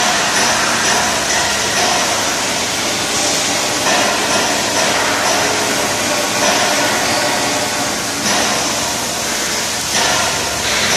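Stick (shielded metal arc) welding on steel pipe: the electrode's arc runs as a steady hiss across the whole sound.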